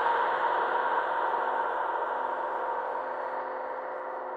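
A held, ringing musical chord slowly fading away, a music soundtrack rather than live sound.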